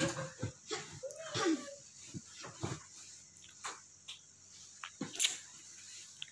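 Pillows and bedding being handled on a bed: scattered soft rustles and taps, a short voiced sound about a second in, and a sharp click near the end.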